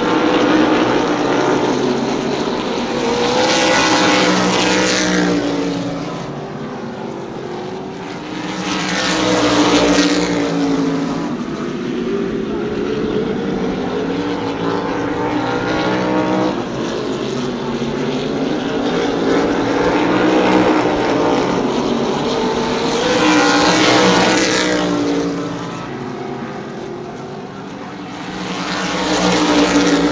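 Open-wheel modified race cars running at racing speed on a short oval, their engine notes swelling and fading several times as the pack passes and goes around the track, the pitch sweeping up and down with each pass.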